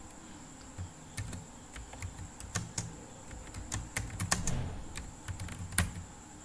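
Typing on a computer keyboard: a run of irregular key clicks as a short phrase is typed.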